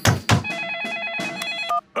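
Two sharp hammer taps on a wooden floorboard, then a telephone ringing with a fast, steady trill for about a second.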